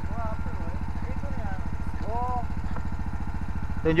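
Small engine on a fishing boat running steadily with an even, rapid low chug, with faint voices over it.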